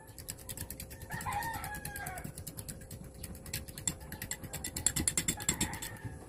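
Fork beating raw eggs in a glass bowl: fast, even clinks, about ten a second. A rooster crows once, about a second in, for about a second.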